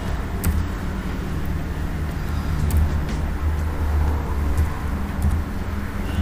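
A steady low background rumble, with a few faint clicks of a computer keyboard as a number is typed in.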